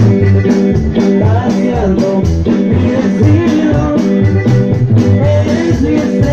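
Live dance band playing loud through PA speakers: a steady beat driven by repeating bass notes, with keyboard and melody on top.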